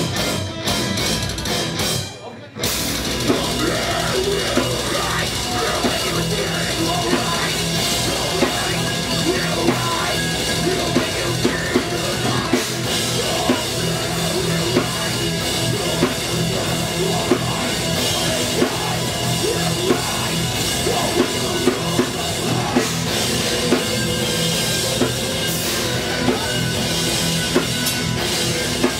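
Live metal band playing loud through a club PA, guitars, bass and drum kit together. The first two seconds are choppy, stop-start hits, then a brief break, and the full band comes back in with sharp, steady drum hits.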